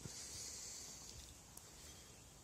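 Faint, steady high-pitched hiss of outdoor background, fading over the first second or so, with one small click about one and a half seconds in.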